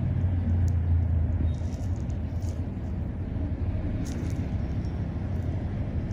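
Steady low hum, strongest over the first second and a half and fainter after, with a few faint small clicks.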